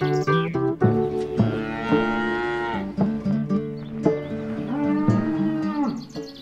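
A cow mooing twice in long drawn-out calls, the first starting about a second and a half in and the second about four seconds in, over light background music.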